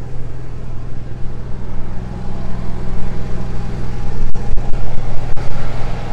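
Onan gas RV generator running at a steady speed, getting louder in the second half. It runs unloaded with its breaker tripped, sending no power to the motorhome.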